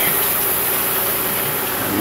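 Small boat's motor running steadily, an even drone with a faint steady hum, as the boat moves through floating water hyacinth.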